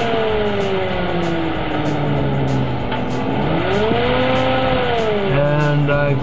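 Stove vent-hood exhaust fan running, with a loud, steady rush of air through the sheet-metal vent pipe and its flapper valve. A steady hum lies beneath it, and a whine rises and falls in pitch twice.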